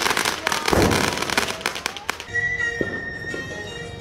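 Fireworks going off: a dense run of sharp crackling pops, with a louder bang about a second in. The pops thin out after about two seconds, and then a steady high tone holds until near the end.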